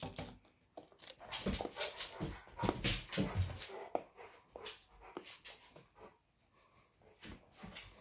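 A dog whimpering, with a run of short breathy sounds between the whines, busiest in the first half.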